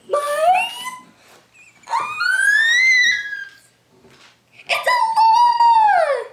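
A young girl's high-pitched, drawn-out squeals of excitement, three in a row: the first rising, the second rising higher and then falling, the last held and then sliding down.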